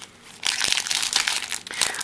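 Foil wrapper of a Pokémon XY Flashfire booster pack crinkling in the hands as it is worked open, starting about half a second in.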